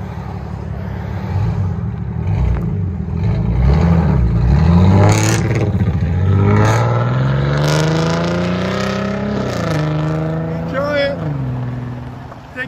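2012 Dodge Charger's 3.6-litre V6, straight-piped with the mid muffler and rear resonator deleted, idling and then revving hard as the car pulls away and accelerates. The exhaust note climbs steadily in pitch, drops at a gear change about three-quarters of the way through, climbs again and fades as the car drives off.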